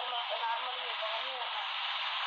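Recorded speech played from a smartphone's speaker held up to a microphone. The voice sounds thin and telephone-like, over a steady hiss.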